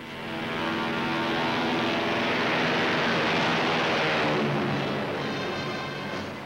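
Four-engine propeller flying boat passing low and close, its engines and propellers droning loud: the sound swells over the first second, holds, then fades away about five seconds in.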